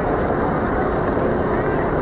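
Steady outdoor city-square ambience: a constant noise with faint voices of passers-by in it.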